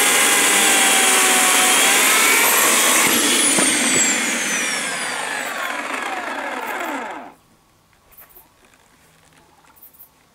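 Bosch AKE 40 S electric chainsaw running at full speed in hard dry acacia wood, its pitch rising slightly about two seconds in. From about three seconds the whine falls steadily as the motor and chain wind down, and it stops about seven seconds in.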